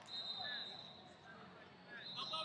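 Faint scattered voices of coaches and onlookers in a large hall, with a high steady squeak lasting about half a second at the start.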